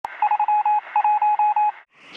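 Electronic beeps on a single pitch from a TV channel's logo sting, a quick run of about a dozen short and longer pulses after a click at the start, stopping just before the end.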